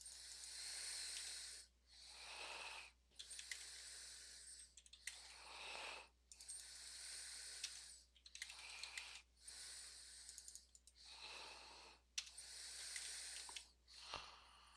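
Very faint breathing into a close microphone, a hiss roughly every second and a half, with a few light computer-keyboard clicks as commands are typed.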